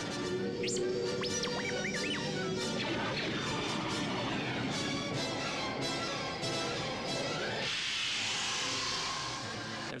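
Space-battle film soundtrack: orchestral score mixed with starfighter sound effects. A droid's warbling electronic whistles come in the first two seconds, and a burst of noise like an explosion comes near the end.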